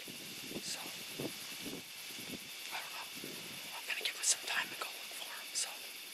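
Whispered speech in short, broken phrases, with a faint steady high hiss underneath.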